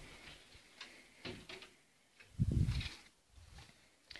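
Handling noise of a phone camera carried while walking: a few faint clicks, then a short low rumble about two and a half seconds in.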